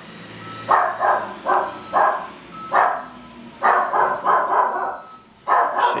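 A dog barking repeatedly, about ten barks in irregular runs, worked up by a garbage truck outside.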